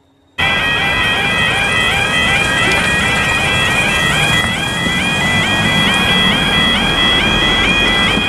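Level crossing audible warning alarm sounding while the barriers come down. It is a loud, repeating stepped two-tone warble that starts suddenly about half a second in. Road vehicle engines run underneath it.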